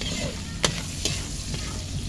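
Garlic sizzling in oil in a steel wok while a metal spatula stirs and scrapes it, with two sharp clinks of spatula on the pan about half a second apart near the middle. The garlic has browned to the point of scorching.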